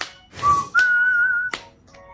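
A person whistling a short tune: a brief note, then a higher note held for under a second with a slight waver, with a sharp click as it ends.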